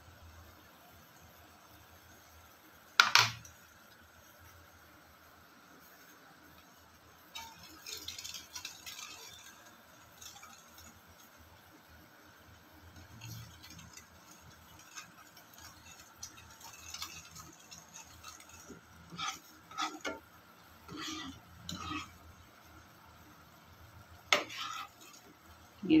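A steel spoon stirring and scraping thick, reduced milk (rabri) in a nonstick kadhai, in scattered spells, with a sharp clink of the spoon on the pan about three seconds in and another near the end.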